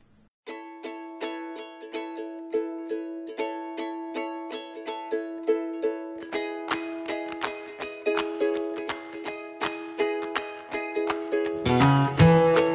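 Background instrumental music with evenly picked, plucked-string notes, about three a second. It starts about half a second in and grows fuller about halfway through.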